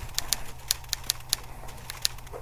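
Typewriter sound effect: a quick, uneven run of sharp key clicks, several a second.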